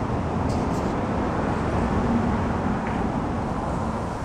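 Steady low rumble of outdoor road-traffic noise, swelling a little in the middle and easing off again.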